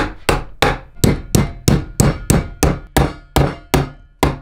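Hammer striking a star-nut setting tool, driving a star nut down into a bicycle fork's steerer tube held in a bench vise: a steady run of sharp strikes, about three a second, each ringing briefly.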